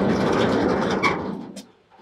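Barred metal gate rattling as it is pushed and shaken by hand, dying away about a second and a half in.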